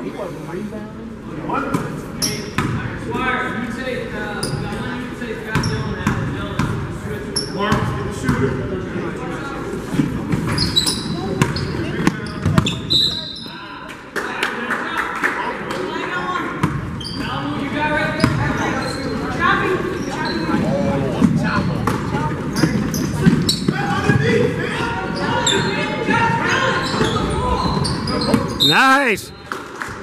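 Basketball bouncing on a hardwood gym floor during game play, with many short knocks, mixed with players' and onlookers' voices, all echoing in a large gym.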